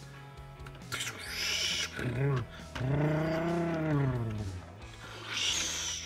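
A man making mouth sound effects for a toy truck over background music: a hissing "pssh" about a second in, a long voiced tone that rises and then falls in pitch in the middle, and another hiss near the end.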